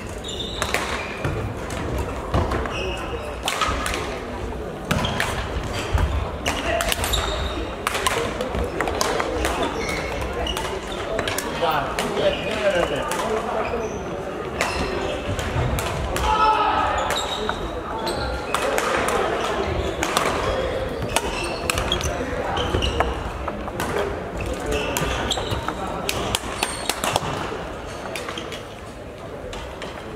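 Badminton rackets striking the shuttlecock in a rally, a run of sharp cracks, over a babble of voices, all echoing in a large sports hall.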